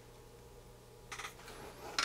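Quiet workbench with a faint steady low hum, and a few faint clicks about a second in and near the end as small electronic parts are handled.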